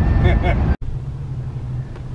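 Car cabin road and engine noise while driving, with voices or music over it for the first part. Under a second in it cuts off abruptly, and a quieter low rumble with a steady low hum follows.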